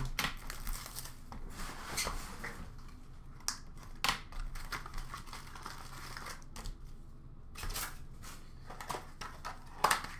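Plastic shrink-wrap crinkling and tearing as a sealed hockey card box is unwrapped and opened, with irregular handling rustle and a few sharp knocks, the loudest about four seconds in and just before the end.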